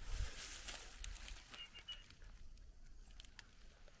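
Faint rustling and crackling of dry straw mulch, with scattered small clicks, as feet move through it. About halfway through, a faint, brief three-note high chirp.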